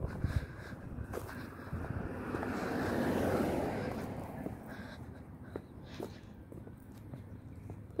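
Outdoor ambience while walking along a road: faint scattered footstep ticks, with a rush of noise that swells and fades over about two seconds in the middle.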